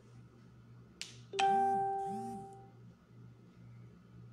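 A short click, then a single chime that rings out and fades away over about a second and a half.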